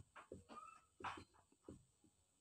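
Near silence with a handful of faint, short squeaks and strokes of a marker pen writing on a whiteboard.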